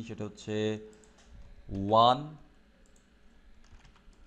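Computer keyboard typing, faint scattered keystrokes in the second half. A man's voice briefly, twice in the first half, the second time louder and rising in pitch.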